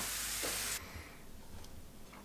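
Scrambled eggs sizzling in a frying pan, a steady hiss that cuts off just under a second in, leaving quiet room tone.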